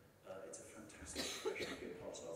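A person coughing once, about a second in, between short fragments of a man's speech.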